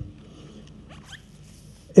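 Low room noise picked up by a handheld microphone, with a faint, short rising squeak about a second in. A man's voice comes back at the very end.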